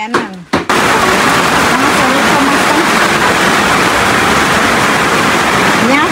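A steady, loud rushing noise that cuts in abruptly about half a second in, after a few spoken words, and holds evenly throughout.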